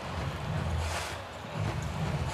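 Basketball game ambience: a steady hum of crowd noise with a low rumble under it.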